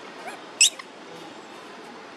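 A single short, high-pitched animal squeak a little over half a second in, falling steeply in pitch, with a couple of fainter squeaks just before it.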